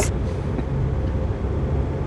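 Steady low road and engine rumble heard from inside the cabin of a moving car.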